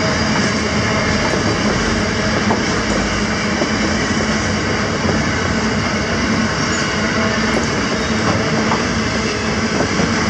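Grain hopper wagons rolling steadily past at speed: a continuous loud rumble of steel wheels on the rails.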